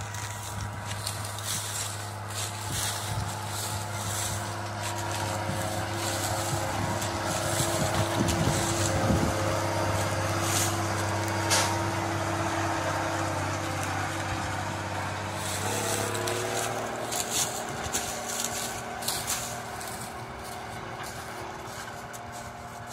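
Self-propelled crop sprayer (Pla Map II 3500) driving past while spraying, its diesel engine running steadily, growing louder toward the middle as it comes close and then easing off. The engine note shifts about two-thirds of the way through.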